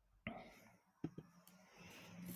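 A faint whisper-like breath or mutter close to the microphone, with one sharp click about a second in.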